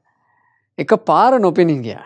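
A man's voice speaking: a short pause, then a drawn-out word whose pitch rises and falls.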